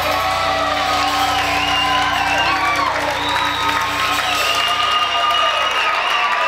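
A rock band's last chord ringing out through the amplifiers, held and sustained, while the audience cheers and whoops over it.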